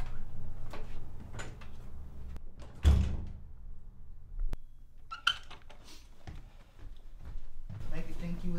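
A door pushed shut with a loud thud about three seconds in, followed a second and a half later by a sharp single click.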